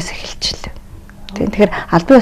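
Conversational speech with a brief pause: soft breathy, whispery sounds at first, then talking resumes about one and a half seconds in.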